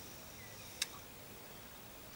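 A quiet room with a faint steady hiss and one short, sharp click a little under a second in.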